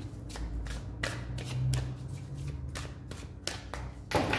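A deck of tarot cards being shuffled by hand: a run of quick, irregular clicks as the cards strike one another.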